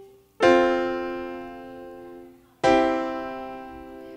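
GarageBand's Grand Piano software instrument playing back recorded MIDI: two piano chords, each struck and left to fade, the second about two seconds after the first. The last chord has been quantized so its notes land together.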